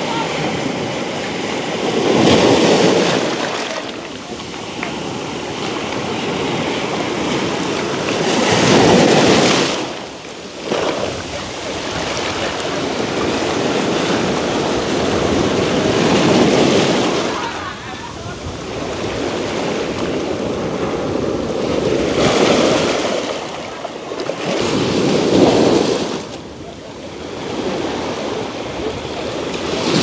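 Sea waves breaking and washing in over a shore of rounded stones and boulders. It is a steady rush that swells into a loud surge every six seconds or so, then draws back between waves.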